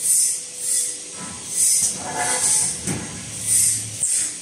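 Automatic 16-nozzle bottle filling machine running: about five sharp hisses of compressed air, half a second to a second apart, as its pneumatic cylinders cycle, over low steady machine noise.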